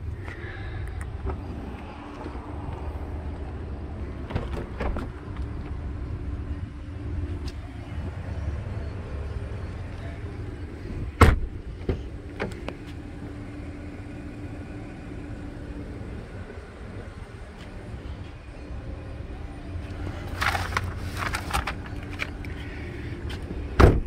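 A steady low hum with one sharp, solid thump about eleven seconds in: the SUV's rear hatch being shut. A few lighter knocks and clicks come near the end.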